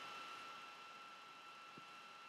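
Near silence: room tone with a faint steady hiss.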